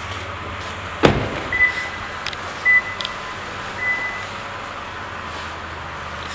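A Lexus RX350 door shuts with a single heavy thump about a second in, followed by a few short high-pitched beeps over a steady low hum.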